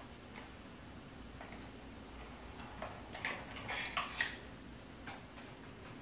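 Faint clicks and taps of makeup products being handled while searching through a makeup organizer, with a small cluster of sharper ticks about three to four seconds in.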